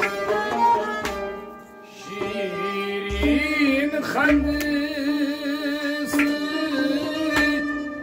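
Kashmiri Sufi devotional song: a man sings with a bowed fiddle and a harmonium, whose steady held note comes in about three seconds in, with a few low drum strokes.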